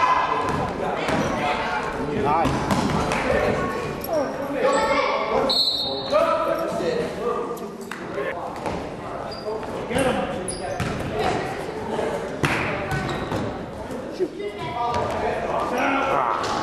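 Basketball bouncing on a hardwood gym floor amid the chatter of players and spectators, echoing in a large gymnasium.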